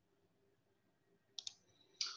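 Near silence, broken about one and a half seconds in by two quick, faint computer-mouse clicks.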